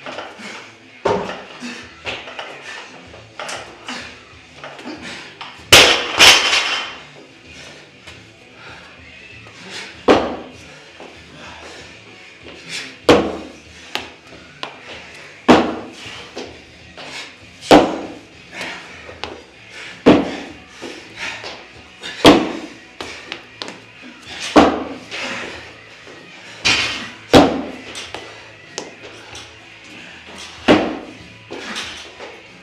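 A barbell loaded with bumper plates crashes onto the floor about six seconds in. It is followed by a steady series of thuds from box jumps landing on a wooden plyo box, about one every two seconds. Music plays in the background.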